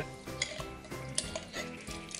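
A small metal ladle clinking and scraping lightly against a glass jar and a stainless steel pot as hot pork gelatin, meat and broth, is spooned into the jar: a few scattered light clicks.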